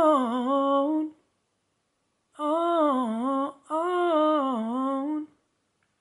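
A man humming a wordless melodic line in three short phrases: the first slides down in pitch and stops about a second in, then after a pause two more phrases each dip down and rise again.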